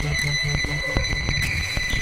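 Riddim dubstep (electronic music): a repeating bass pulse about five times a second and sharp drum hits over a steady high synth tone. The bass pulse stops after about half a second while the hits carry on.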